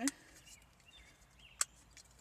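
A single sharp click about one and a half seconds in, from handling the small metal tea-light lanterns, in an otherwise quiet car.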